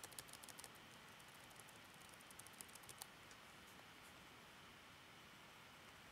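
Near silence with a few faint clicks from a computer being operated, a cluster just after the start and a few more about halfway through.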